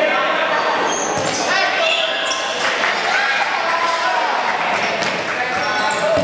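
Dodgeball play in a large hall: players and spectators shouting, with a few thuds of rubber dodgeballs striking the floor or players, echoing.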